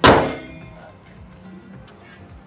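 Car bonnet (hood) of a Daihatsu Sigra slammed shut and latching: one loud thunk right at the start that dies away within about half a second.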